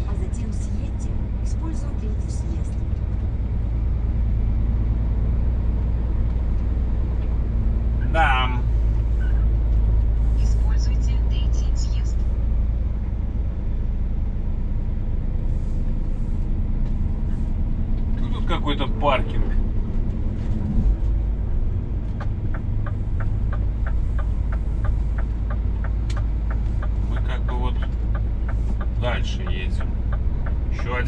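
Steady low drone of a Scania S500 truck heard from inside the cab while driving. A short voice-like sound comes twice, and a regular ticking runs for several seconds in the second half.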